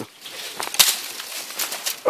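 Dry tall grass and brush rustling and crackling as someone pushes through it on foot, an irregular run of crackles and snaps with the sharpest about a second in.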